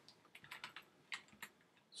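Faint keystrokes on a computer keyboard as a web address is typed: an uneven run of quick, light clicks.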